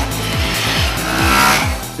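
A motorcycle running hard at high revs, its sound swelling to a peak about one and a half seconds in and then falling away, over background music with a repeating falling bass.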